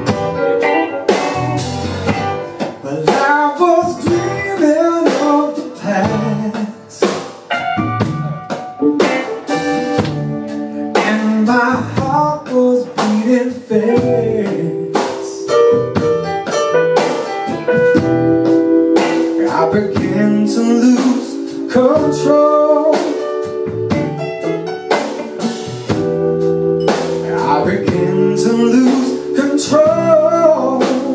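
Live band playing a slow instrumental intro with electric guitar, keyboards, bass and drums.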